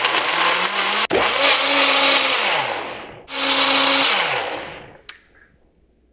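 High-powered countertop blender running at full speed, puréeing frozen kale with water. It runs, winds down with a falling pitch, starts again and winds down a second time, followed by a single click.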